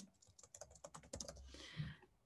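Faint, rapid typing on a computer keyboard: a quick run of light key clicks.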